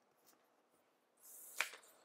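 Paper sticker sheet handled on a desk: quiet at first, then a short rustle as the sheet is picked up, ending in one sharp click about one and a half seconds in.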